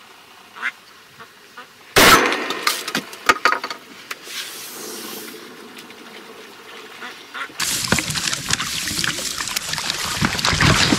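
Ducks quacking, with a single loud shotgun shot about two seconds in, followed by more calls. Near the end a steady rushing noise takes over.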